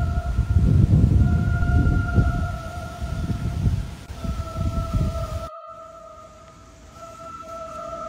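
A steady held tone with a second tone an octave above it, sounding throughout and shifting slightly in pitch about four seconds in. Under it runs a low rumble that cuts off suddenly about five and a half seconds in.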